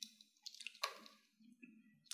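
Quiet computer keyboard typing: a few faint, scattered keystroke clicks over a low hum.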